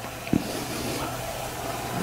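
Steady low hum of room tone with faint hiss, and one short soft thump about a third of a second in.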